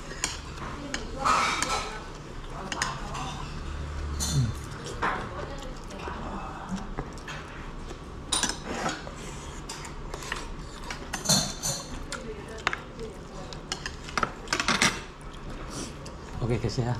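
Metal chopsticks and spoons clicking and scraping against heavy black soup pots and small ceramic dishes while two people eat, in short, scattered clinks.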